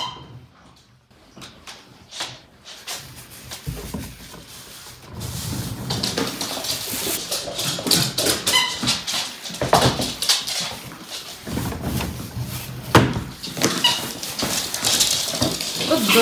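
Pembroke Welsh corgis at play on a hard floor: dog noises with scrabbling and scuffling. It gets busier and louder about four seconds in.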